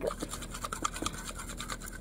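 A utensil stirring clear glue and pink colouring in a small plastic container, making a run of quick, quiet scrapes and clicks against the container's sides.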